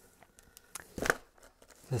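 Faint rustling of a cardboard box and the plastic wrapping of packed washi tape rolls being handled: a few small crinkles and ticks, then a short, louder rustle about a second in.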